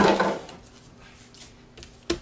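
A short, loud knock with a brief clatter at the very start, then quiet room tone with a faint click near the end.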